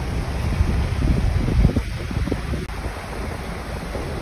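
Wind buffeting the phone's microphone in uneven low gusts, over the steady rush of water jetting from the dam's outlet and pouring over rocks.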